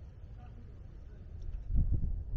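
Wind buffeting the microphone as a low rumble, swelling into a stronger gust near the end.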